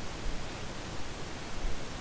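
Steady background hiss of the recording's noise floor, with no distinct sound events.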